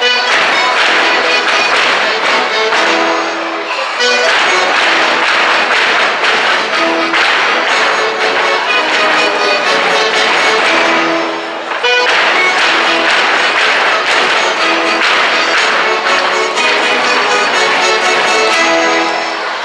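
Live traditional gaúcho folk dance music played by a small band with accordion, steady and lively, with the dancers' shoes stepping on the stage boards.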